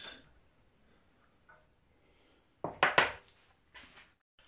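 A few sharp metallic clinks in quick succession about two and a half seconds in, small steel parts knocking together as they are handled, after a stretch of near silence.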